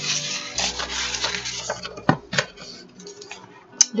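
Sheets of folded paper rustling as they are handled and gathered together, followed by a few sharp taps.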